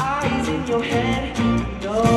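A live pop song played through an arena PA: a male singer's lead vocal over electric guitar and a full band.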